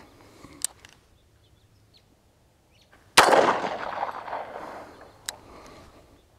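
A single shot from a 1911 pistol about three seconds in, its report trailing off in a long echo. A short sharp click follows near the end.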